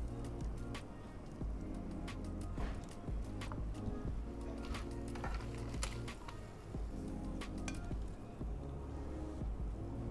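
Background music with steady held chords. Over it come scattered light clicks and clinks of metal tongs against the tray of mussels and the plate.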